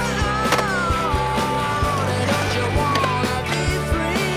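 A rock music soundtrack with a bending, gliding melody over steady low notes. Skateboard sounds are mixed in: wheels rolling on concrete and a few sharp clacks of the board hitting the ground.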